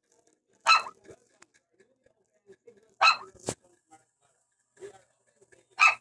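Three short, loud animal calls, about two and a half seconds apart, heard over a video call.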